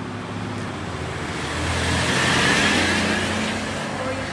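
A vehicle passing on a nearby road: its tyre and engine noise swells to a peak a little past halfway and then fades, over a steady low hum.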